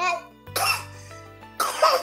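Two short coughs, about half a second and a second and a half in, over quiet, steady background music.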